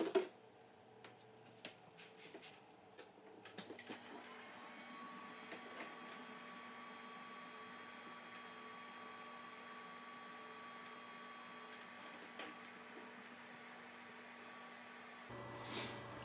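A few light clicks, then about four seconds in the oil-immersion cooling rig of an Antminer S9 starts up. Its circulation pump and radiator fans give a faint steady hum with a whine that rises briefly and then holds at one pitch.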